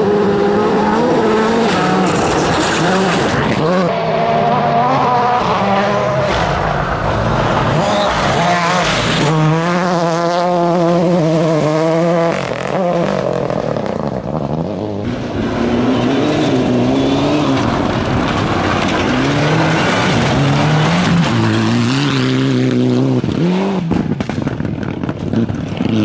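Rally car engines driven hard on a gravel stage, pitch climbing and dropping as the cars shift gear and lift off, with a fast wavering engine note around the middle. Tyres scrabble on loose gravel underneath.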